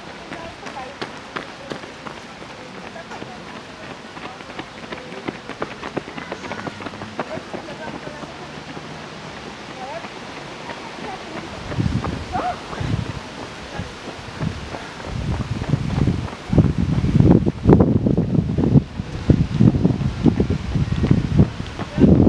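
Road-race ambience: runners' footsteps on asphalt and faint voices. In the second half, wind buffets the microphone in loud, irregular low rumbles.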